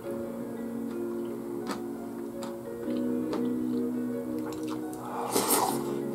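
Background music with steady held notes. Over it, a metal spoon clinks against a bowl a few times, and there is a loud slurp of rice porridge near the end.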